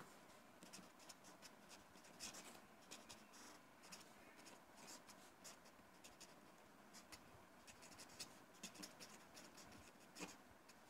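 Faint scratching of a pen writing on paper, in quick short strokes as words are written out.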